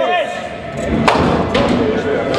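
Two sharp knocks about half a second apart over a low rumble, from heavy balls and pins on nine-pin bowling lanes in a reverberant hall.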